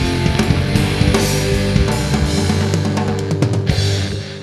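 Rock band playing an instrumental passage without vocals: electric guitars over a drum kit, loud and steady.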